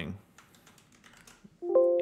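Faint computer-keyboard typing, a few soft key clicks as a word is typed into a browser's find box. Near the end a louder held musical chord of several steady notes begins.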